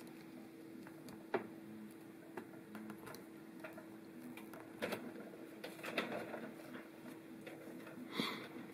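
Faint clicks and taps of a plastic power-supply connector being handled and pushed into its socket on an electronics control box, a few sharp ones scattered through, over a faint steady hum.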